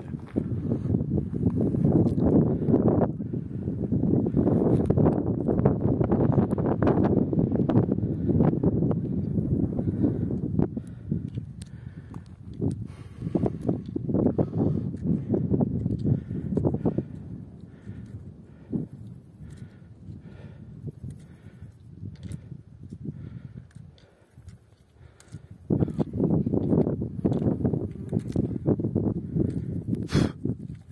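Gusting wind rumbling on the microphone, heavy for the first ten seconds, dying down and then rising again near the end. Under it come a steady run of crunches and sharp clicks from footsteps and walking poles on a stony mountain path.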